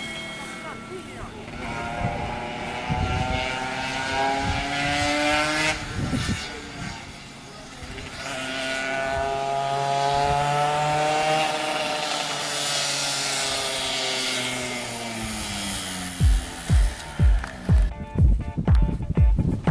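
Yamaha F1ZR two-stroke race motorcycle at high revs, its pitch climbing for several seconds and dropping off sharply about six seconds in. It climbs again and then falls away slowly as it passes and pulls away. Music with a steady beat starts near the end.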